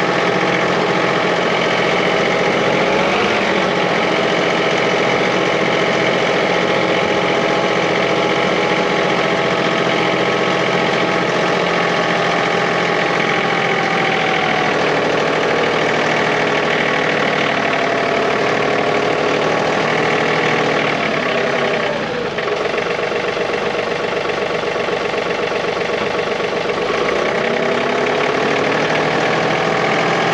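John Deere 3039R compact tractor's three-cylinder diesel engine running steadily while the tractor drives, its pitch shifting slightly a few times with a brief dip about two-thirds of the way through.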